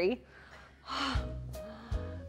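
A woman's short breathy laugh about a second in, over light background music.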